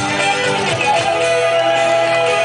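Live band music with a guitar playing held notes over a full, steady accompaniment, heard from the audience seats.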